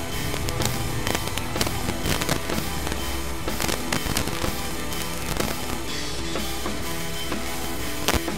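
Honda VFR800's V4 engine running at low revs as the bike rides slowly, under a constant crackle of wind buffeting the microphone.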